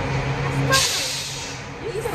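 Low steady engine hum with a short burst of hissing about three-quarters of a second in, lasting about half a second.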